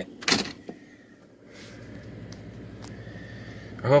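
A short sharp knock just after the start, then steady rain noise building from about a second and a half in.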